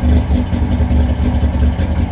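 1958 DKW 3=6's 900 cc three-cylinder two-stroke engine idling steadily at about 1200 rpm while it warms up.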